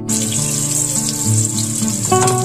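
A steady hiss that starts abruptly, with background acoustic guitar music playing underneath.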